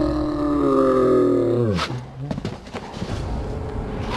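A young man's long, sustained shout on one open vowel. Its pitch sags and then drops steeply before it cuts off just under two seconds in, followed by a couple of short knocks.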